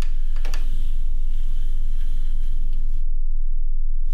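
A deep, steady drone from the film's sound design. Over it runs a crackling, static-like layer with a few sharp clicks near the start, which cuts out suddenly about three seconds in.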